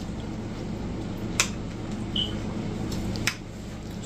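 A metal fork clicking lightly against a dinner plate a couple of times while eating, with one brief high clink near the middle, over a steady low room hum.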